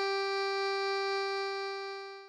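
A single sustained G note, sounded as the starting pitch for the key of G. It holds steady and fades away near the end.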